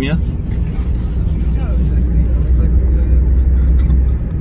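Car cabin rumble from a taxi under way: a low, steady drone of engine and road noise that grows louder over the last two seconds, then stops abruptly at the end.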